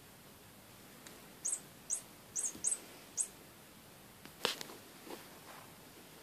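Five short, high-pitched chirps in quick succession, then a sharp knock about four and a half seconds in.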